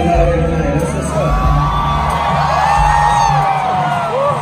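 Loud live concert music with a strong pulsing bass beat, and fans close by screaming and cheering, most of all in the second half.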